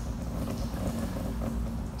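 Outdoor background noise: a steady low rumble with a faint hum.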